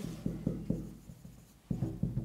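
Felt-tip marker writing on a whiteboard: a quick run of short strokes and taps, a brief pause just past halfway, then more strokes.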